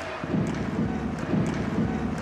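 Rink sound of an ice hockey game in play: a steady low murmur with a few faint clicks.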